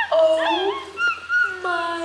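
Capuchin monkey giving a string of high, whining calls that glide up and down in pitch, with some held notes.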